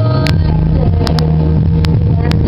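Recorded music playing through computer speakers, with held low bass notes throughout and a few sharp clicks scattered among them.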